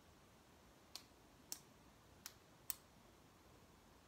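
Four short, sharp clicks at uneven spacing over a near-silent room.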